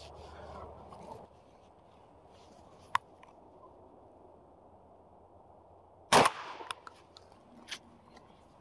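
A single shotgun shot about six seconds in: a Beretta A300 Ultima Patrol 12-gauge semi-automatic firing one round of #00 buckshot. A lone sharp click comes about three seconds in.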